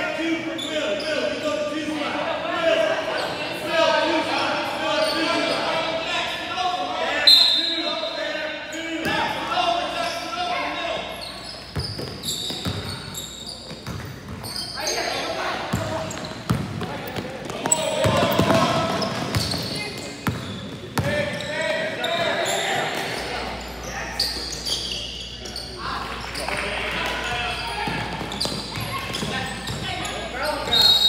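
Voices of spectators and players, with a basketball bouncing on the hardwood court, echoing around a large gym. Short knocks come thick and fast in the middle of the stretch as play runs up the court.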